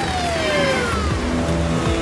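Ambulance siren sliding down in pitch and dying away about a second in, over background music.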